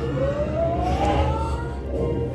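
Movie soundtrack played through classroom speakers: one tone gliding upward for about a second and then holding, over a steady low hum.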